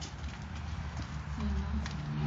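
Footsteps of people walking over a hard floor, a few sharp steps, with low, indistinct voices under them.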